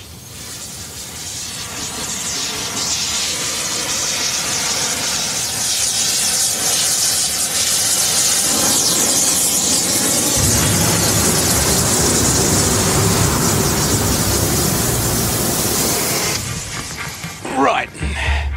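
Oxy-acetylene cutting torch (gas axe) hissing as it heats a steel bar, growing louder over the first couple of seconds and then holding steady. A deeper rumble joins about ten seconds in.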